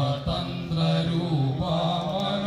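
A man's voice chanting a devotional mantra-style song, holding long notes that glide up and down in pitch.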